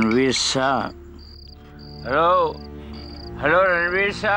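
Crickets chirping in a regular run of short, high-pitched trills over background music. In the music a wordless, voice-like melody swells and falls in phrases, loudest at the start and again in the second half.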